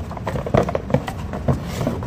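Paint tins being lifted out of a cardboard box: cardboard rustling and scraping, with a few short knocks spaced about half a second apart.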